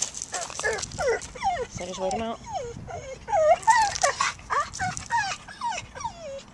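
A dog whining and yipping in a rapid string of short, high-pitched cries, many of them falling in pitch.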